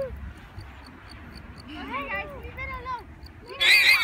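Llama giving its shrill, warbling alarm call, a run of quick rising-and-falling squeals that starts loudly near the end, with a few fainter calls about two seconds in.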